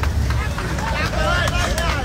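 Street noise: voices talking over a steady low rumble of vehicles in traffic.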